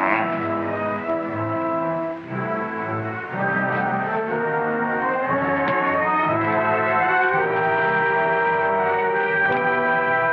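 Orchestral film score with held brass chords, briefly dipping about two seconds in and then swelling to a steady, sustained passage.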